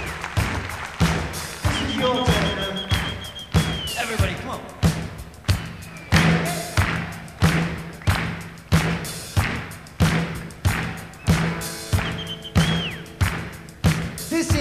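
Live rock drum kit playing a steady beat, a heavy thump about every 0.7 s over a low held note. A long high whistle sounds twice over it, falling away at its end each time.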